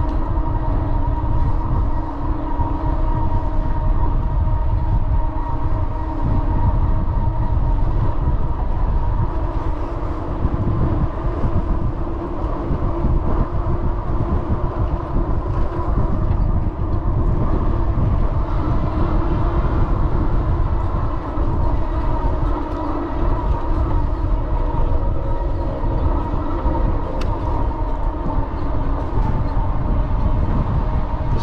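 Rad electric bike's hub motor whining steadily at cruising speed, several even tones held throughout, over a low rumble of wind on the microphone.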